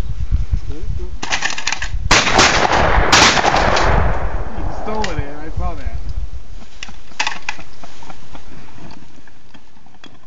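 Shotgun firing at clay targets: two loud shots about a second apart, each with a trailing echo, just after a short clatter. A voice is heard briefly afterwards.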